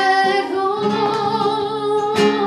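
Flamenco music: acoustic guitar plucked and strummed under a singer holding one long, wavering sung note.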